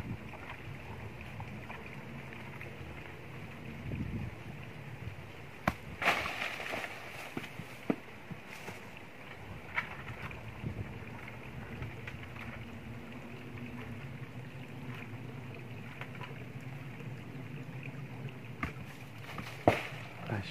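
Steady outdoor background rumble and hiss, with a few short knocks and rustles scattered through it, the loudest about six seconds in and just before the end.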